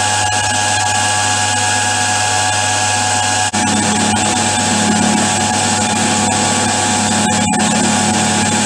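Milling machine running loudly with a steady hum and whine, spot-facing a BSA Bantam's aluminium crankcase. A little over three seconds in there is a brief dip, and then a lower tone joins and holds as the cutter is fed down into the metal.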